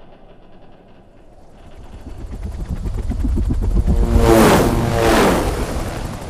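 Helicopter rotors chopping, growing louder as the helicopters approach. The loudest pass comes about four to five seconds in, its pitch falling as it goes by.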